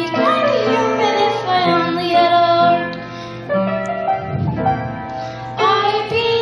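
A child singing a show tune over a musical accompaniment, the melody gliding up and down across sustained backing notes.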